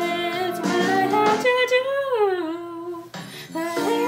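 A young woman singing solo over instrumental accompaniment. She holds long notes, slides down in pitch about halfway through, and breaks off briefly about three seconds in before coming back in.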